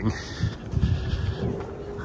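Outdoor background noise: a low rumble with a faint steady hum.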